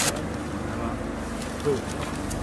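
A steady low mechanical hum, like a running motor, with a sharp knock right at the start.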